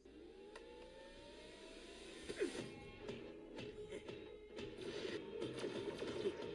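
Animated show's soundtrack playing quietly: background score with a smooth rising mechanical whine over the first couple of seconds as the robot mech suits power up, then scattered clicks and whirring.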